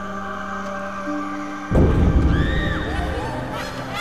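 Dramatic film score of sustained, held tones, broken a little under two seconds in by a sudden loud low boom, the loudest moment, after which gliding pitched sounds enter.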